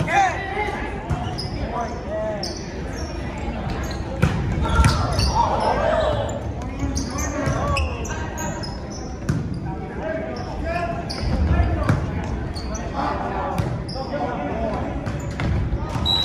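Volleyball rally: the ball is jump-served and then struck again and again, each hit a sharp slap, while players and spectators shout over the play.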